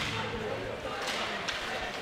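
Ice hockey rink ambience: a steady crowd murmur with a few sharp clacks of sticks and puck as the faceoff is taken and play begins.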